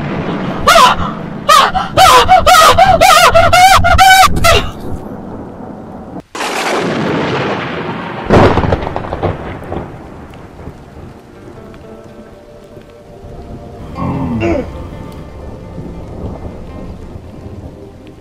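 A woman screaming in a run of loud, wavering shrieks, then a sudden thunderclap about six seconds in and a louder crack of thunder about eight seconds in, its rumble slowly dying away.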